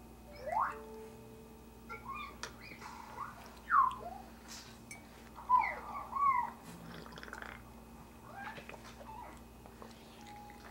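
A domestic cat meowing several times in short calls that slide up or down in pitch, the loudest about four and about six seconds in.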